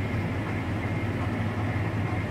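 A vehicle's engine idling steadily, a low even hum with no change in pitch, heard from the vehicle the recording is made from.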